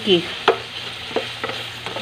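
Plastic spatula stirring pork and vegetables in a nonstick frying pan, knocking against the pan a few times over a faint sizzle of stir-frying.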